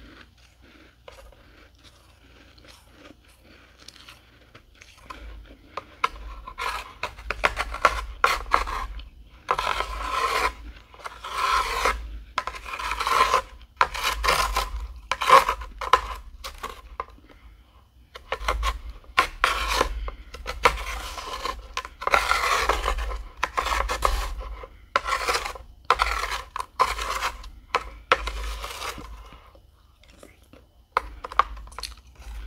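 Metal spoon scraping and scooping through dry, flaky freezer frost in a tray, in repeated strokes of about a second each. The strokes begin about five seconds in, after a few quiet seconds of faint crackles, and pause briefly just past halfway.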